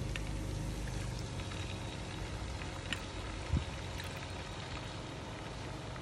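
Water poured into a hot wok of fried garlic, onion and sugar, then a steady low sizzle that slowly dies down, with a light knock about three and a half seconds in.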